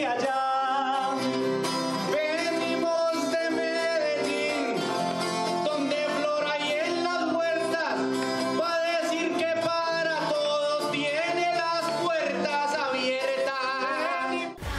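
Male voice singing a trova, a Colombian paisa sung verse, to strummed acoustic guitar chords.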